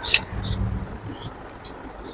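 Close-up mouth sounds of eating by hand: a sharp wet smack at the start, then a few more lip smacks while chewing, over a low steady rumble.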